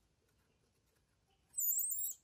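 Newborn baby macaque giving one short, very high-pitched, wavering squeak near the end.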